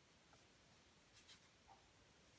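Near silence in a small room, with a few faint, short rustles of hands handling a crocheted yarn swatch, a little past a second in.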